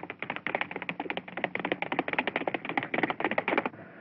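Hoofbeats of a horse at a gallop: a fast, uneven clatter of hoof strikes that stops shortly before the end.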